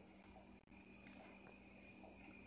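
Near silence: a faint steady background hum and high whine in a pause between speech.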